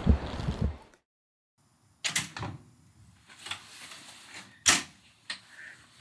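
Street background noise cuts off about a second in. After a gap, a hotel room door opens and closes in a quiet room, with a few sharp clicks and knocks; the loudest knock comes near the end.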